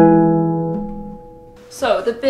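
Concert pedal harp striking a final blocked chord that rings and fades away over about a second and a half. A woman starts speaking near the end.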